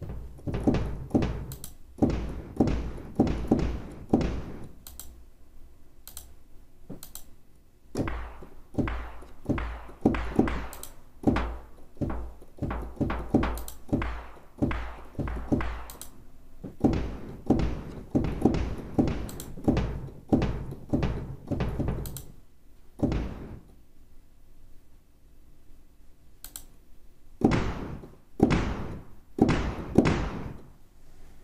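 Cinematic tom drum hits from a Backbone drum-resynthesizer patch, played in quick runs with short pauses between, each hit a deep thump with a short decay. The tom layers are auditioned one by one with the Resynth section switched off.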